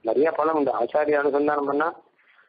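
Speech only: a man talking in Tamil.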